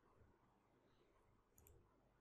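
Near silence, with a couple of faint computer mouse clicks about a second and a half in.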